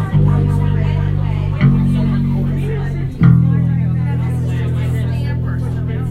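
Amplified acoustic guitar playing loud sustained chords, changing about every second and a half, then a last chord held and slowly fading, with voices faintly in the room.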